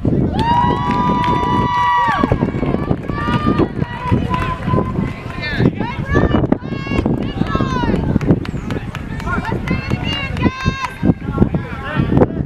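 People shouting on a soccer field during play, with one long, high held yell near the start and many shorter shouts after it.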